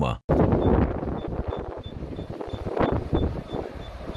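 Wind buffeting an amateur camera's microphone outdoors, loudest at first and easing off, with a faint high beep repeating about three times a second.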